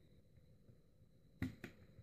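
A stuck plasma TV control circuit board being worked loose by hand from its mounts: two sharp clicks about a second and a half in, a quarter second apart, the first the louder, over a quiet room.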